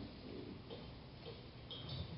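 A few faint ticks over quiet room tone.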